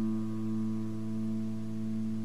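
A guitar chord held and ringing out steadily in an instrumental emo track, its low notes strongest, with no new strums.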